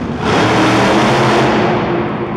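Monster truck engine revving hard under throttle, its roar surging loud about a quarter second in and easing off near the end.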